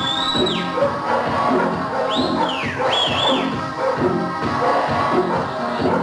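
Background music with a steady beat, cut by shrill whistled calls that rise and fall, once at the start and again from about two seconds in: a stockman's whistle commands to a working sheepdog.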